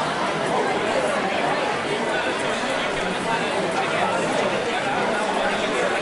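Steady crowd chatter, many overlapping voices with no single speaker standing out, in a busy indoor market hall.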